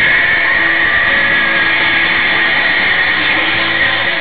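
Music with guitar playing steadily, loud and with a strong high-pitched band running through it.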